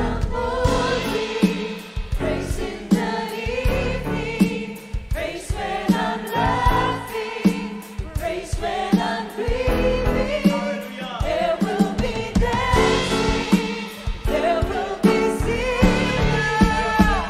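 Live worship band and group of singers performing an upbeat praise song: lead and backing vocals over drums and keyboard, with a steady beat.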